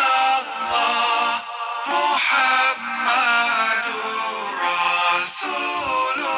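Islamic zikir (dhikr) sung as a melodic chant, a voice singing over musical backing.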